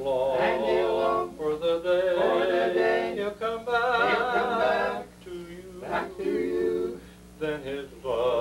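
Male barbershop quartet singing a cappella in four-part close harmony. The chords are held in phrases, with short breaks between them.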